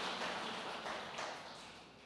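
Congregation applauding, the clapping fading steadily away.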